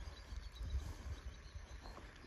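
Faint outdoor ambience: insects chirping softly over a low, uneven rumble.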